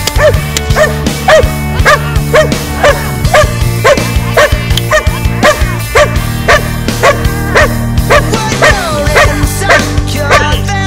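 A dog barking at a steady pace, about three barks a second, over loud rock music.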